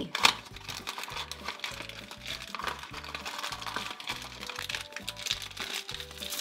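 Crinkling and rustling of a crumpled green wrapper being pulled open from a toy blind box, a dense run of small crackles. Quiet background music with a steady beat runs underneath.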